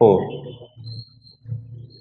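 A man's voice drawing out the last word with a long falling pitch, followed by two short, faint low hums.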